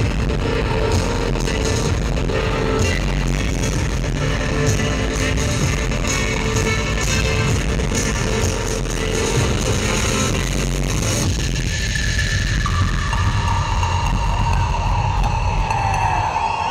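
A rock band plays live with electric guitar, bass and drums, heard through the PA in a concert hall. About eleven seconds in, the fuller playing thins out, leaving a held note over the rhythm.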